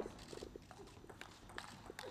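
Table tennis rally: the ball clicking sharply off bats and table in an irregular string of hits, with quieter scuffing of the players' shoes on the court floor.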